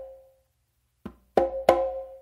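Conga played by hand: a soft finger tap (ghost note) followed quickly by two open slaps with a bright, ringing tone that fades after each stroke. The ring of the previous two slaps is dying away at the start.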